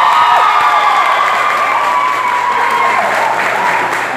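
Audience in a large hall cheering and applauding, many voices shouting and screaming together over the clapping.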